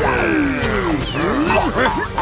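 A cartoon villain's angry vocal growl that slides down in pitch over about a second, followed by a few short rising-and-falling vocal sounds, over background music.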